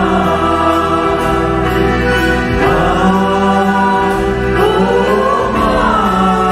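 A small mixed choir of women's and men's voices singing a hymn in long held notes, accompanied live by keyboard, accordion and acoustic guitar.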